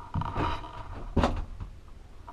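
A few soft knocks and bumps, the sharpest a little after a second in.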